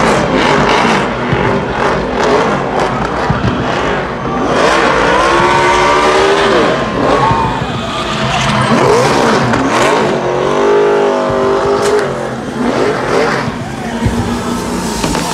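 NASCAR stock car's V8 engine revving hard during a victory burnout, its pitch climbing and falling in long sweeps about five and ten seconds in, over the rush of spinning rear tyres.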